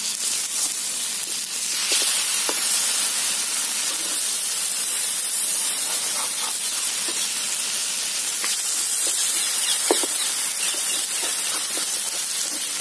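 Egg-topped tomato slices sizzling steadily in oil in a blackened metal frying pan, the sizzle growing louder about two seconds in. A metal spatula scrapes and taps the pan a few times as the slices are lifted and turned.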